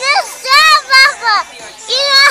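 A young girl shouting "No!" and then giving three more high-pitched, playful shouts in quick succession.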